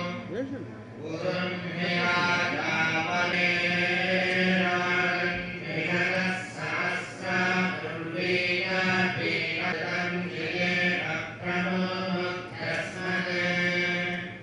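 A group of male priests chanting mantras together into microphones, in a steady recitation on a low tone with brief pauses for breath.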